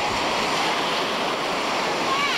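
Storm surf breaking over a rocky shoreline: a steady, loud rush of waves and spray.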